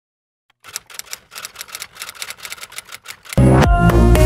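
Silence, then a run of quick, sharp clicks like a camera shutter or typewriter, then background music with a heavy bass beat starting about three seconds in.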